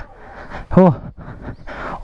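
A man's short spoken 'oh' over steady background noise, with a brief click right at the start.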